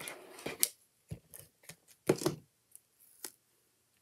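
Stampin' Seal adhesive tape runner dragged in a few short scraping strokes across the back of a die-cut paper piece, the longest about two seconds in, with paper rustling as the piece is pressed into place.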